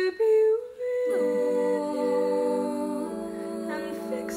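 Girls' vocal group humming wordless sustained chords in close harmony, unaccompanied. The chord shifts about a second in, with the lower voices sliding into place, and moves again near three seconds.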